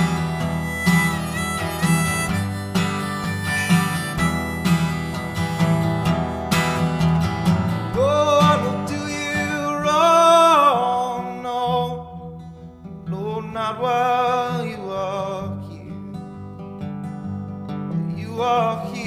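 Acoustic guitar strumming with a harmonica playing a melody over it, its notes bending up and down. The melody drops away briefly about twelve seconds in, then comes back.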